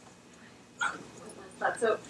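Quiet room tone, then a short vocal sound from a person just under a second in, followed by the start of speech.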